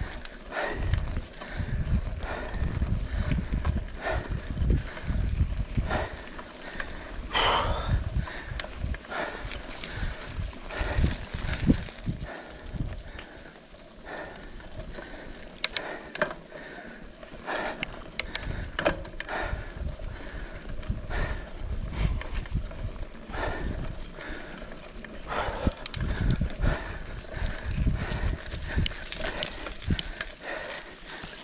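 Mountain bike riding down a rough, rutted dirt trail: irregular knocks and rattles from the bike over bumps, with low rumbling jolts, easing off for a few seconds around the middle.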